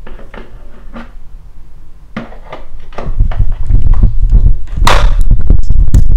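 Plastic knocks and clicks of a baby car seat being handled and fitted onto a pushchair frame, several sharp ones in a row. About three seconds in a loud low rumble of the phone being handled takes over, with one sharp knock near the end.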